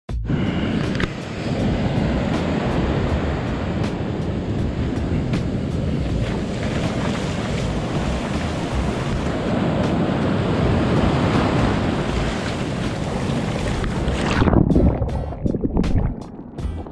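Ocean surf washing up the beach, with wind buffeting the microphone. About fourteen and a half seconds in, the sound turns suddenly muffled as water washes over the camera. A faint, regular ticking beat of background music runs underneath.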